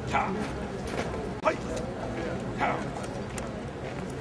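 Three short, sharp voice calls, a little over a second apart, over a steady low murmur of voices outdoors.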